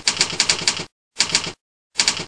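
Typewriter sound effect for text typing onto a slide: rapid key clicks, about ten a second, in bursts separated by short silences. The first burst lasts about a second, a shorter one follows, and another starts near the end.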